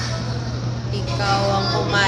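Restaurant dining-room din: people talking over a steady low hum, with the voices coming up about a second in.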